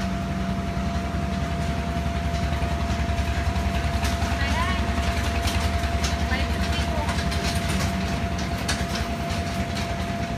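Electric inflation blower of a bounce house running steadily, a low drone with a thin steady whine over it, heard from inside the inflatable.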